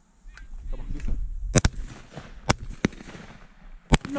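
Four shotgun shots fired at passing doves, sharp single cracks: the loudest about a second and a half in and just before the end, with two more in between, the second of them fainter.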